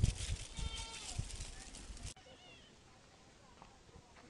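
A short bleat from a farm animal, about half a second in, over outdoor rumble and hiss; about two seconds in the sound cuts to a much quieter background with a faint high chirp.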